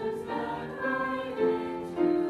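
Choral music: a group of voices singing held notes over musical accompaniment.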